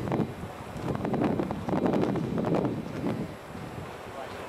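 Wind buffeting the camcorder's microphone in uneven gusts, a rumbling rush that swells about a second in and again in the middle before easing off near the end.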